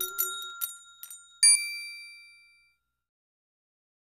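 Bell-like chime sound effects: a quick run of high, sparkly tinkles, then one loud ding about one and a half seconds in that rings on and fades away over about a second.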